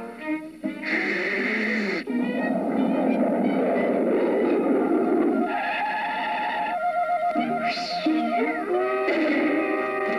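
Cartoon soundtrack music with comic sound effects: a few seconds of hissing noise about two seconds in, and a short falling whistle near the end.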